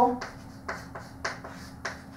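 Chalk tapping against a blackboard while writing: four short, sharp taps about half a second apart.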